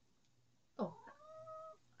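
A house cat meowing once: a single drawn-out meow starting a little under a second in, rising quickly and then holding a steady pitch for about a second.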